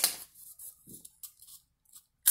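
Scissors cutting through box cardboard: several short, faint snips and crunches as the blades close on the cardboard.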